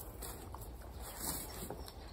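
Faint outdoor background with a low rumble, and a few soft taps and rustles from a person moving and crouching down beside a wooden raised bed.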